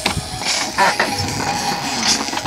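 Ambient music playing in the background.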